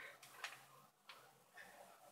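Near silence: room tone with a faint click about half a second in.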